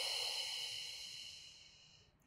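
A woman's long, slow exhale out through the mouth, a steady breathy hiss that fades away over about two seconds.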